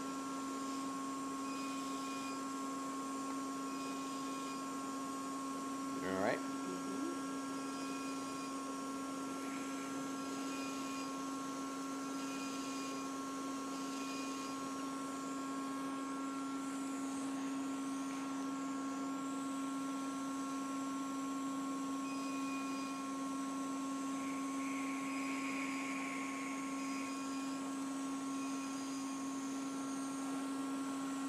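Steady electrical hum of medical equipment, holding several constant tones, with faint short beeps now and then. About six seconds in comes a brief rising squeak.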